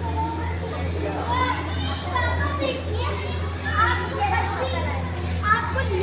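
Children's voices chattering and calling out among the fish tanks, over a steady low hum.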